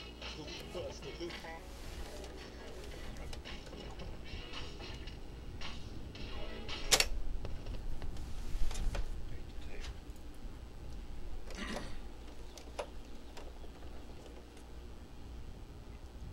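Sharp GF-9494 boombox: faint speech and music from its speaker in the first couple of seconds, then sharp mechanical clicks and clunks from the cassette deck's keys and door, the loudest about seven seconds in. The cassette is being taken out after the deck chewed its tape.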